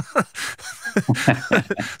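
Brief laughter with a few broken-off words, in a small room.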